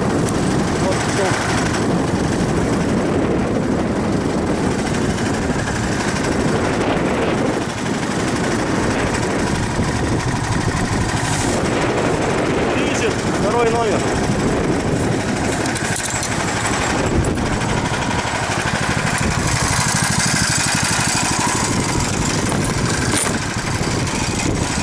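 Small single-cylinder engine of a motorized snow tow idling steadily and without a break.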